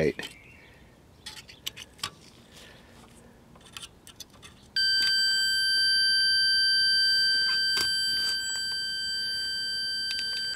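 Multimeter continuity beeper sounding one steady high-pitched tone from about halfway in, lasting about five seconds, after a few faint probe clicks. The beep and the near-zero reading mark a short across the Zener diode being tested.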